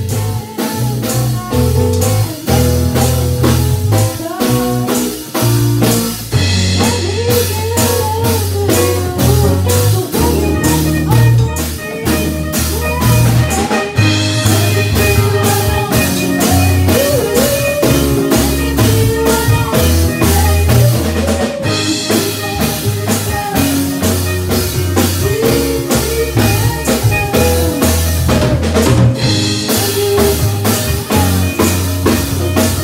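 A live band playing: drum kit keeping a steady beat, electric guitar and electric piano, with a sung lead vocal over them.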